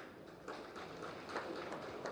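Faint background noise with a few soft taps, about three in two seconds.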